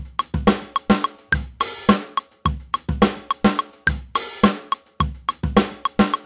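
A recorded drum-kit groove in 9/8 playing as a one-bar loop, its kick, snare, hi-hat and cymbal hits repeating evenly at a fast tempo. The groove has a ghost note a sixteenth before the kick on the one.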